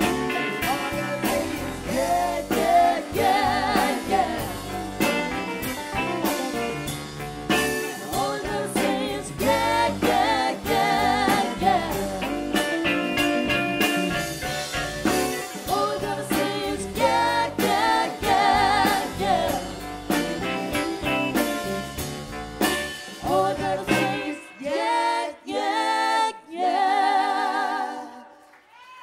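Live rock band with electric guitars, keyboards, bass and drums, and a female lead singer with harmony singers. About twenty-four seconds in, the band drops out and the voices carry on alone in harmony, held with vibrato through a few short closing phrases.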